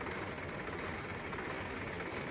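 Rebuilt engine running steadily, with heavy blow-by gas venting from its crankcase breather hose once hot. This is excess blow-by that, with the liners, pistons and rings found sound, may come from worn exhaust valve stems and guides.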